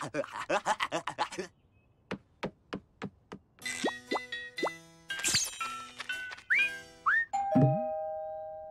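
Cartoon soundtrack: a cartoon cat laughs gleefully in quick bursts, then come five evenly spaced sharp ticks and playful music with sliding whistle-like glides. Near the end a two-note doorbell chime rings and fades out.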